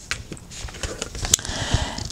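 Tarot cards being slid across and picked up off a cloth-covered table: a few light clicks and soft scraping of card on cloth, with a sharper click a little past the middle.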